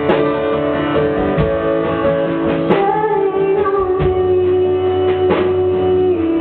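A woman singing live to her own acoustic guitar strumming, holding one long note through the second half.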